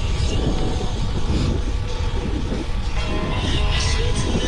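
Wind rushing over the microphone of a camera on a moving bicycle, a loud steady low rumble.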